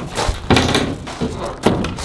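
A door being pushed open and shut: a thunk about half a second in, then a sharp knock shortly before the end. These are the creepy noises the doors make.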